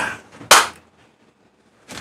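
A single sharp smack about half a second in, right after the tail of a spoken word.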